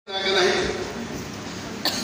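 A man's voice through a handheld microphone: a brief utterance right at the start, then fainter room noise, with a short click just before the end.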